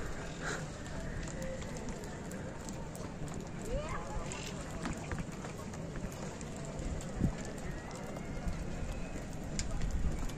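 Outdoor street ambience from above a snow-covered city street: a steady background hum with faint distant voices, and a brief soft knock about seven seconds in.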